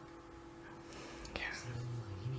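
Quiet room with soft, whispered speech: a murmured 'yeah' and a faint low voice near the end, over a steady faint electrical hum.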